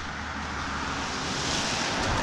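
A car approaching on the road, its tyre and road noise swelling steadily louder.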